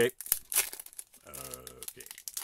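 Foil wrapper of a Panini Prizm WWE trading-card pack being torn open and crinkled by hand, a string of sharp irregular crackles.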